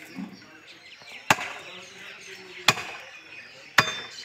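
Three sharp chops of a heavy butcher's cleaver striking through beef, spaced about a second apart.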